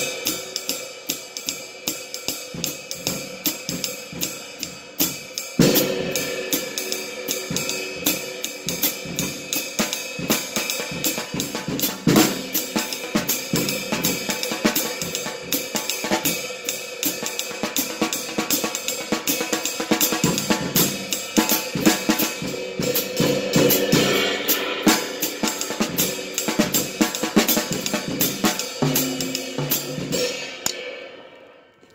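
Drum kit playing jazz time: cymbals carry a steady pattern while the bass drum is feathered, struck softly with a felt beater close to the head, with a few louder accents along the way.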